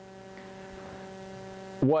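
Steady electrical mains hum, several held tones over a faint hiss; a man's voice begins near the end.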